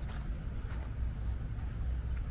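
Steady low rumble with a faint, even hiss above it: outdoor background noise.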